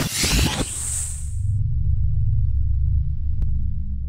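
Logo-intro sound design: a swelling whoosh that fades out about one and a half seconds in, over a steady deep rumble that carries on to the end.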